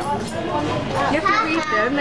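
Overlapping voices and children's chatter in a busy restaurant, with no other distinct sound standing out.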